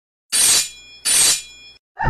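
Two claw-slash sound effects, each a short scratchy swipe with a faint metallic ring trailing after it, about three quarters of a second apart.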